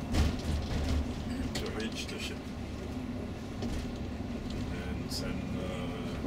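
Cabin of a moving coach bus: steady low engine and road drone, with indistinct passenger voices and a few short clicks and rattles.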